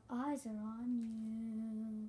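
A girl singing unaccompanied: a brief wavering phrase, then one long held note.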